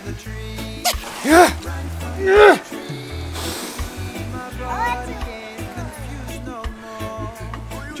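Background music with a steady bass line, over which a man gives two loud yells that rise and fall in pitch, a second or so apart, from the shock of an ice-water barrel bath. A brief splash of water follows.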